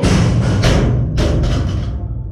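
A loaded barbell with bumper plates dropped from overhead onto rubber gym flooring, landing with a heavy thud and bouncing a few times, over loud music with a chanted "go, go, go".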